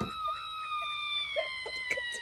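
A hen giving one long, drawn-out call that slowly falls in pitch, with brief bits of a woman's soft laughter underneath.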